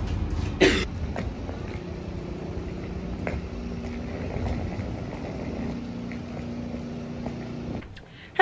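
Low rumble of a London Underground train carriage in motion, with one short sharp burst just over half a second in. After about a second it gives way to a quieter, steady city-street background with a faint low hum.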